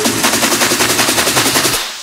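Trap music build-up: a fast, even roll of sharp percussive hits, like a snare or machine-gun roll, that breaks off abruptly just before the end.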